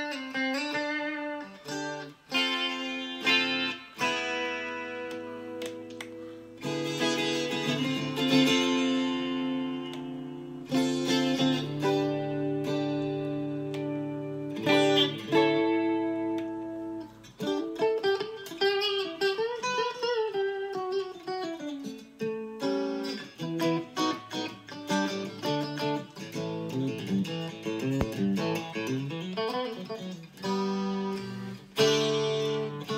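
Chord CAL63M strat-style electric guitar with three single-coil pickups, played unaccompanied: chords left to ring, then quicker single-note lines, with one note swooping up in pitch and back down a little past halfway.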